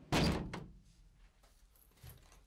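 A door with a frosted glass panel shutting firmly: one thud just after the start that dies away within about half a second, leaving faint room tone.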